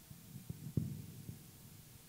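A few soft, low thumps, the loudest a little under a second in, over a faint steady hum.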